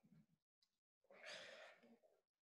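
Faint breath noise close to the microphone, a soft exhale starting about a second in and lasting about a second; otherwise near silence.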